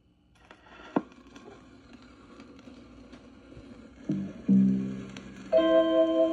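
A 1968 soul 45 rpm vinyl single starting to play: faint surface hiss and crackle with one sharp click about a second in, then the song's intro comes in about four seconds in with low notes, joined a second and a half later by a held chord of higher, ringing tones.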